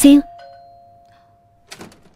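Doorbell chime with two notes, a higher one then a lower one, fading away over about a second. A short rattle near the end as the door handle is worked.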